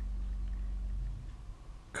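A steady low hum with no other sound, which fades a little over a second in.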